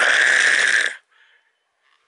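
A man imitating with his mouth the noise of a collapsed quad roller-skate wheel bearing: a loud, harsh, gritty rasp lasting about a second, then it stops. It stands for the grinding of a ruined bearing, which he blames on fine dust getting into the bearings.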